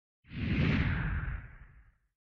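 A single whoosh sound effect over a low rumble, swelling in about a quarter second in and fading away over the next second and a half, its hiss sinking in pitch as it fades.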